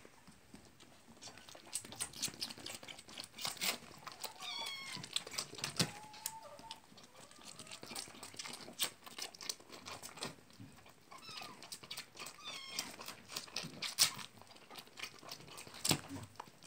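Young lamb sucking milk from a plastic baby bottle: a run of quick, irregular sucking and smacking clicks. A few short, high-pitched animal cries come around the middle.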